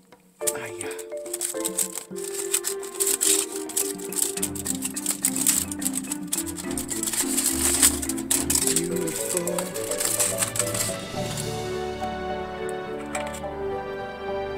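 Aluminium foil crinkling and rustling as it is pulled off loaf pans, over background music; the crinkling dies away near the end.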